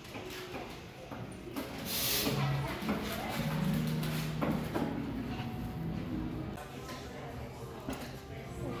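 Indistinct voices of people talking in a bakery, with a short hiss about two seconds in.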